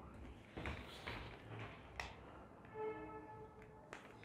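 Faint handling and movement noises with a few sharp clicks, and a brief pitched squeak lasting under a second about three seconds in.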